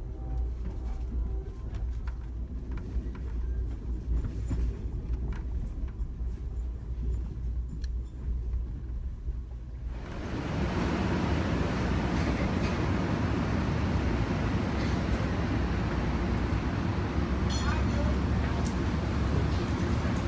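Passenger train in motion: a steady low rumble, which about halfway through gives way abruptly to a louder, even rushing noise.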